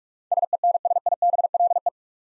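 Morse code practice tone sent at 45 words per minute: one steady-pitched tone keyed rapidly on and off in short dits and longer dahs for about a second and a half. It is the repeat sending of the word "sensible".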